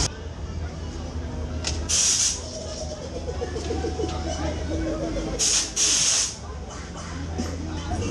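Bursts of compressed air hissing in two pairs, a short puff followed by a longer blast, about two seconds in and again about five and a half seconds in, over a steady low fairground hum.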